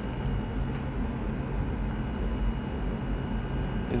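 A steady low hum under an even hiss, with no distinct events.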